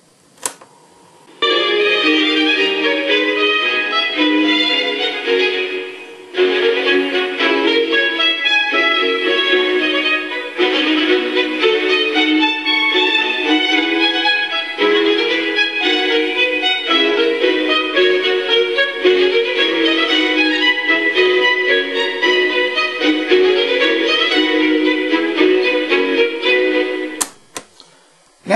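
Classical violin music playing back from a cassette on a vintage Sharp RD-426U cassette recorder, heard through its small built-in speaker with a little bit tinny sound. The play key clicks in about half a second in, and a key click stops the music near the end.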